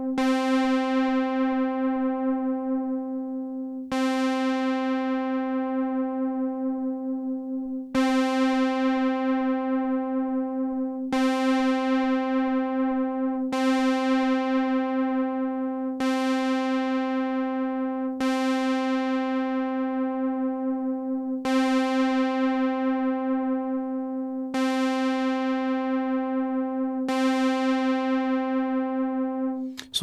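A single synthesizer note at one pitch, played through a Juno-60-style analog chorus pedal, is re-struck about ten times, every two to four seconds. Each strike starts bright and mellows as the upper harmonics fade, with a slight wobble from the chorus modulation as its internal trim pot is being set.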